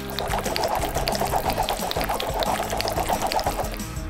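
Liquid pouring or gurgling, a dense grainy sound that runs for nearly four seconds and stops just before the end, over steady background music.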